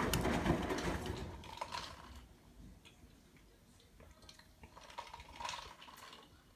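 Front-loading washing machine on a delicates cycle: wet clothes tumbling in the drum with a clattering, clicking noise, which stops about two seconds in as the drum comes to rest. After that there are only faint scattered clicks and one short swish near the end.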